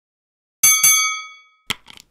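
Bell-ring sound effect from a subscribe-and-notification animation: two quick metallic dings about a quarter second apart, ringing out and fading over about a second, followed by a short click near the end.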